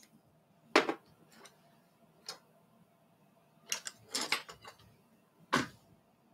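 Sharp clicks and knocks of small hard objects being handled: a loud one about a second in, a few lighter ones, a rattling cluster near the middle, and another loud one near the end.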